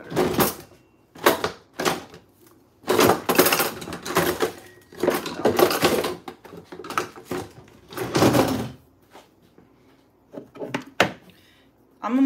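Irregular clattering and rustling from kitchen items being handled, in a run of separate bursts that stop about nine seconds in, followed by a few short sharp clicks.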